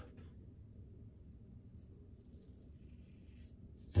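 Double-edge safety razor blade scraping through lathered stubble against the grain, a faint scratchy hiss lasting about two and a half seconds from about a second in.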